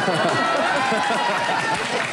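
Overlapping voices: several people talking at once in a busy room.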